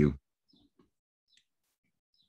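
A spoken "thank you" ends at the very start, then near silence with a few faint, short clicks.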